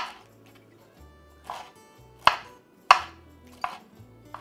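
Chef's knife cutting through pineapple and knocking on a wooden cutting board: five sharp chops at irregular intervals, the second and last softer than the others.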